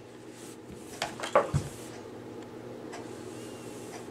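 A clothes iron being handled and set down onto a paper towel over a silicone baking mat: a few light knocks and a paper rustle about a second in, ending in a soft thud, over a faint steady hum.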